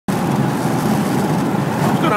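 Steady road noise inside a Ford car's cabin at highway speed: tyres, wind and engine blend into one even rush.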